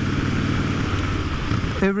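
Motorcycle engine running steadily at cruising speed, under a steady rush of wind and road noise while riding.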